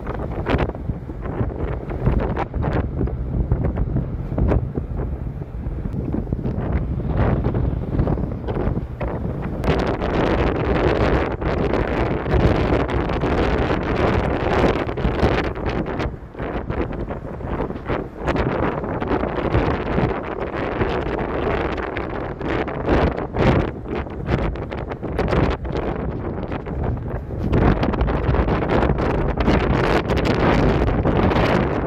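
Wind buffeting the microphone: a loud, gusty rumble that rises and falls unevenly, with a couple of brief lulls about halfway through.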